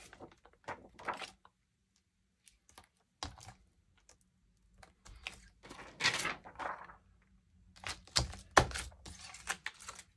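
Clear photopolymer stamps being pressed back onto their plastic storage sheet and the sheet handled: scattered light taps and clicks with plastic rustles, a louder rustle just past the middle and a cluster of sharp clicks near the end.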